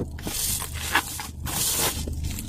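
Plastic bubble wrap crinkling and rustling in uneven bursts as it is pulled off a boxed fishing reel.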